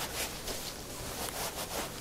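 A T-shirt being scrunched and squeezed in gloved hands: a soft, continuous fabric rustle with faint crinkles.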